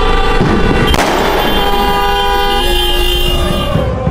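Several car horns honking together in long, held blasts at fixed pitches, overlapping into a chord: celebratory honking by fans in street traffic.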